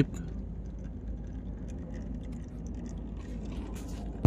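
A steady low background rumble, with faint light ticks and drips as oil mixed with flood water drains in a thin stream from the engine's oil pan.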